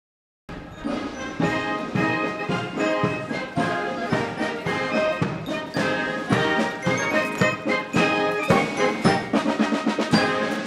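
Military brass band playing a march, brass over a steady drum beat. It starts abruptly about half a second in, after a moment of silence.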